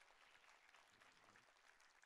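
Near silence, with faint scattered applause from the audience.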